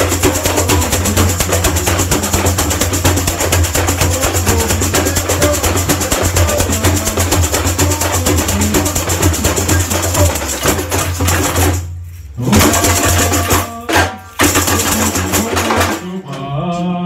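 Samba bateria playing: chocalhos (metal jingle shakers) rattling in a fast, steady rhythm over drums. About twelve seconds in, the playing stops for a moment, then comes back in two short bursts.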